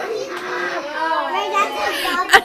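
Children's voices chattering and calling out over one another, a jumble of many voices with no single clear speaker.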